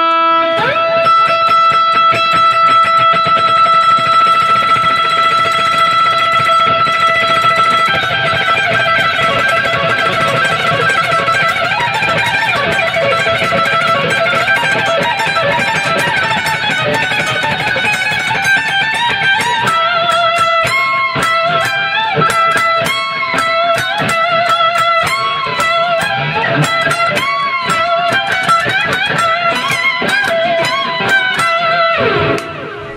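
Paul Reed Smith electric guitar picked fast with alternate strokes of a thumb pick. A single held note rings for the first several seconds, then dense rapid runs of picked notes follow, with bent notes in the second half.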